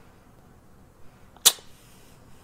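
A single sharp click about a second and a half in, over quiet room tone.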